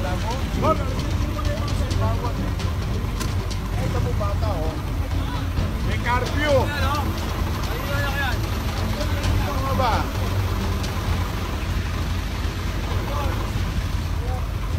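Large truck engine idling with a steady low rumble, under the voices of people talking.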